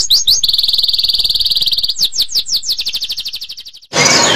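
A songbird singing a high phrase: a few quick swooping notes, then a long, fast, even trill. The phrase repeats about two seconds in and fades out near the end.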